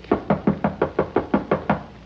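Knuckles rapping on a studio sound-effects door: a quick run of about ten knocks, each with a short hollow ring, signalling a visitor at the door.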